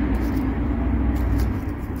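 Steady low rumble of a passing motor vehicle, easing off about one and a half seconds in.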